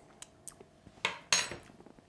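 A small metal teaspoon set down on the counter: a few light clicks, then a sharper metal clink with a short ring about a second and a half in.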